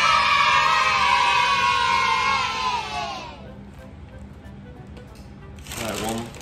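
Edited-in sound effect of a group of children cheering "yay" together, held for about three seconds, sliding slightly down in pitch and fading out. It is a celebratory sting marking a positive verdict.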